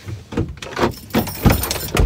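A few short clicks and knocks inside a parked car, about five in two seconds, the loudest a dull thump in the second half.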